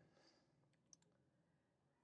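Near silence: room tone, with one faint click about a second in.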